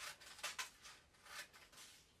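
Scissors cutting through a sheet of thin origami paper: a few short, faint snips.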